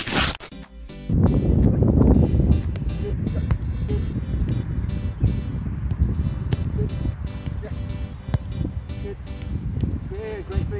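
A whoosh at the start, then wind noise on the microphone over background music. A football is kicked every second or two, each pass a short sharp knock.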